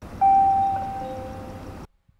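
Title-card sound effect: a two-note ding-dong chime, a higher note followed about half a second later by a lower one, both ringing on over a rushing noise and fading, then cutting off suddenly just before the end.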